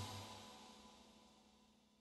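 The last of the song's music fading out within the first moment, then near silence.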